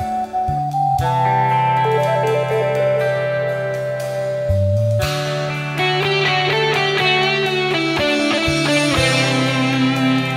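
Rock band playing an instrumental passage: an electric guitar lead melody stepping through notes over sustained bass, with keyboards and drums.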